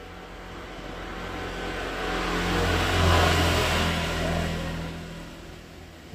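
A motor vehicle passing on the road, its engine and tyre noise growing louder to a peak about three seconds in and then fading away.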